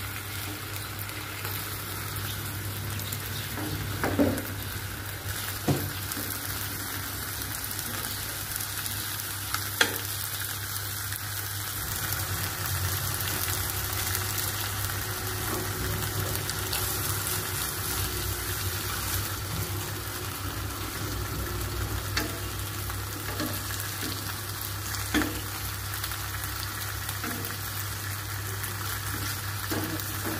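Pork pieces sizzling as they fry in a non-stick pan, a steady hiss throughout. A few sharp clicks of metal tongs against the pan break in as the meat is turned.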